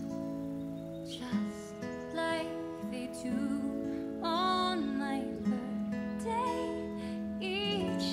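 Slow, gentle song with a woman's voice singing drawn-out phrases over acoustic guitar and held accompanying notes.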